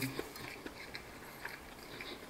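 A person chewing a bite of crispy fried chicken drumstick with the mouth closed: faint, scattered small clicks and crunches.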